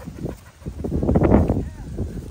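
A dog vocalizing loudly for about a second, starting about halfway through.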